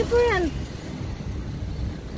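Low, steady rumble of a car driving slowly, heard from inside the cabin, with a short voiced sound with falling pitch at the start.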